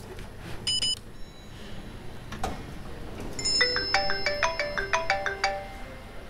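Mobile phone ringtone playing a short melody of quick, bright notes from about halfway through. A brief high chime sounds about a second in.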